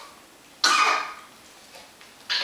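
A single short cough a little over half a second in.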